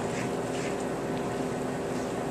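A steady mechanical hum made of several fixed low tones, under soft sounds of a rubber spatula stirring oats and milk in a bowl.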